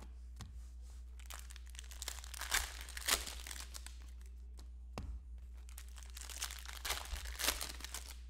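Cellophane wrappers of Panini Prizm basketball cello packs crinkling and tearing as the packs are ripped open and the cards handled, with scattered sharp crackles, the loudest about three seconds in.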